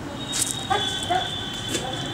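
A dog whimpering, with a few short high yips, over a thin steady high-pitched tone.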